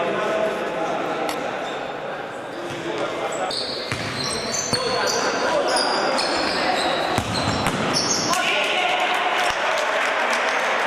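Futsal being played on a hard sports-hall floor: players' voices calling out, sharp ball kicks and bounces, and a run of short high shoe squeaks in the middle, all echoing in the hall.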